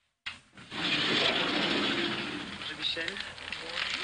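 Cellophane wrapping on a large bouquet of flowers rustling and crinkling as it is handled. It starts suddenly, and voices join in near the end.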